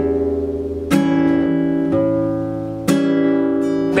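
Classical guitar strummed, two chords about a second and three seconds in, each left to ring out.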